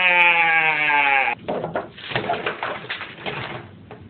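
A voice holding one long, slightly falling note that cuts off suddenly about a second in, followed by a couple of seconds of irregular clattering and rustling.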